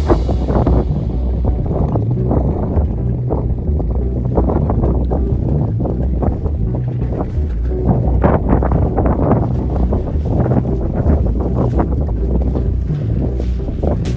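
Wind buffeting the microphone: a loud, irregular low rumble that gusts up and down throughout.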